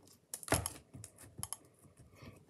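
Slime being pressed down into a small plastic jar with the fingers: a few quiet, irregular clicks and squishy taps, the strongest about half a second in.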